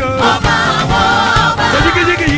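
Gospel choir singing praise music into microphones over instrumental accompaniment with a steady beat.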